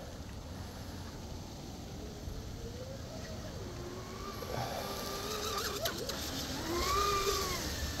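Electric RC catamaran's brushless motor (Rocket 2948, 3450kv) whining faintly out on the water. It grows louder over the second half as the boat comes closer, and its pitch rises and falls with the throttle.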